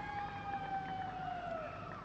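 A long, steady horn tone held for nearly two seconds, sagging slightly in pitch before it fades, over a faint even background noise.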